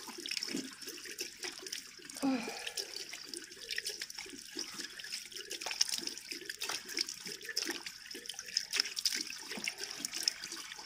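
Face being rinsed with handfuls of water, splashing and running back down into a basin, over a steady hiss of a running tap, as facial cleanser is washed off.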